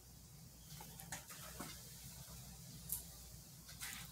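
Near quiet, with a low steady hum and a few faint, scattered clicks and rustles of small things being handled.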